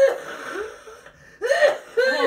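People laughing around a table. A loud laugh at the start trails off, and another burst of laughter comes about a second and a half in.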